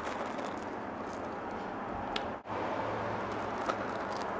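A toasted marshmallow being bitten and chewed: a few faint soft clicks over a steady background hiss.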